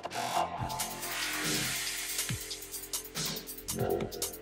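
Electronic background music with held synth tones and falling pitch sweeps about every second and a half.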